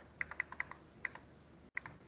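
Computer keyboard keys pressed a few times: faint, irregularly spaced light clicks.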